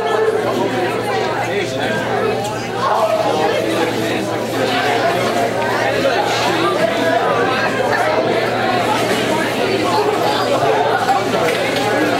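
Crowd chatter: many overlapping conversations in a large hall, no single voice standing out, over a steady low hum.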